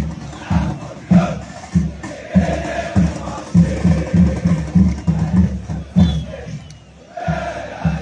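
Football supporters in a packed stand chanting together over a steady, pounding drum beat. The chant and drums drop off briefly near the end, then start up again.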